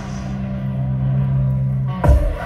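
A live rock band over a large outdoor PA holds a steady low drone of two sustained bass notes, the opening of the next song.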